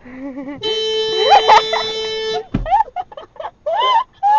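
Golf cart horn honking: one steady, unbroken beep held for nearly two seconds and cut off with a low thump, with girls laughing and shrieking over it.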